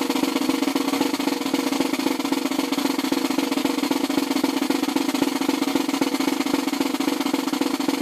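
Marching snare drum played in a steady, unbroken roll, the sticks' fast strokes blending into one continuous rattle.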